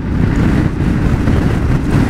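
Wind buffeting the microphone of a Yamaha Ténéré 700 motorcycle at road speed, with engine and road noise underneath: a steady, heavy rushing.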